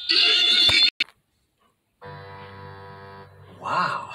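A short, loud, high-pitched sound in the first second, then after a moment of silence, steady, sustained keyboard chords playing from a TV, with a voice coming in near the end.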